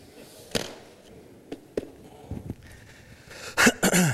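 Knocks and thuds of books and other items being handled and set down on a lectern close to its microphone: a few separate knocks, then the heaviest thumps near the end.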